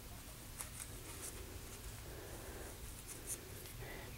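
A gardening knife tip wiggling and poking drainage holes through the bottom of a soil-filled disposable coffee cup, heard as faint scratches and small clicks spaced irregularly.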